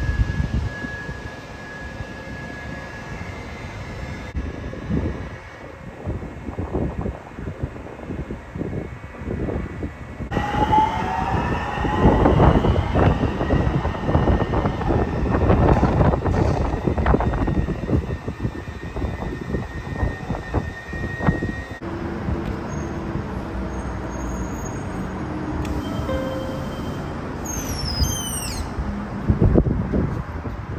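A Skyline rapid-transit train pulling out of the station. From about ten seconds in, its motor whine rises in pitch and the rolling noise grows loud for about ten seconds, then drops away. A few brief high chirps come near the end.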